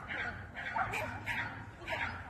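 A dog whining and yipping in short cries that glide up and down in pitch, over human voices.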